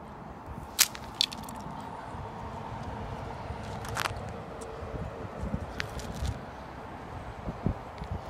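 Steady low outdoor rumble with a few sharp cracks or clicks, the two loudest close together about a second in and another near the middle, and a few soft thumps later on.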